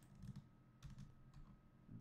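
A few faint, scattered clicks and taps of a computer keyboard and mouse, against near silence.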